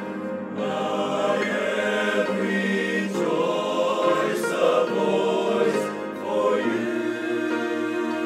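Male choir singing together, holding sustained notes that shift in pitch every second or so.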